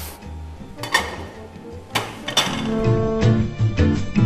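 A few sharp clinks of ceramic plates being set down and handled on a stainless steel counter, over quiet background music. Nearly three seconds in, a louder, rhythmic music track takes over.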